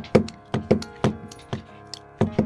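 Hand-pumped hydraulic lug crimper being worked: a run of short, sharp metallic clicks, several a second, as the handles are pumped to close the die on a battery cable lug.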